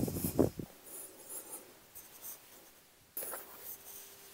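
Scuffing and rustling of hands, knees and feet shifting on an exercise mat, with a louder thump about half a second in. Another burst of rustling comes near the end.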